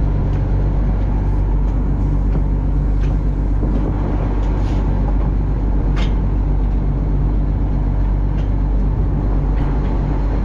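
Fishing boat's engine running steadily with a low, even drone, with a few light clicks over it.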